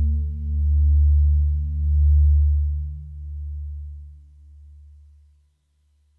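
Yamaha FB-01 four-operator FM sound module playing a low bass patch: one sustained deep note that swells and fades in slow pulses about once every second and a quarter. Its brighter overtones die away first, and the note fades out about five and a half seconds in.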